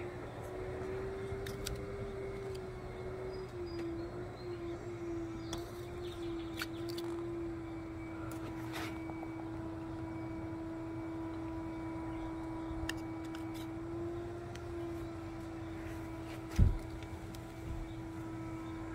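A steady mechanical drone, dropping slightly in pitch about three and a half seconds in, with a few faint clicks and one sharp thump near the end.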